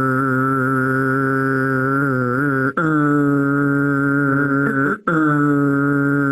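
A low voice drawing out a long 'rrr' sound, the letter R's phonics sound, held at a steady pitch in three long stretches with short breaks about a third and two-thirds of the way through, like a motor running.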